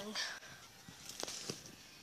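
Faint handling noise from a hand-held camera being moved, with two short sharp clicks about a quarter-second apart, a little past the middle.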